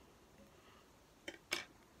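Scissors snipping through a length of crochet chenille: two quick snips about a second and a half in, the second louder.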